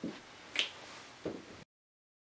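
One sharp, short click a little over half a second in, between two soft low thumps, in a quiet room; the sound then cuts off to dead silence near the end.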